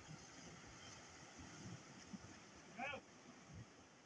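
Near silence: a faint outdoor background hiss, with one brief, faint call of a distant voice about three seconds in.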